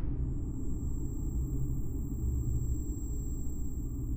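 Low, steady rumbling drone of dramatic sound design, with a faint thin high-pitched ringing tone held above it.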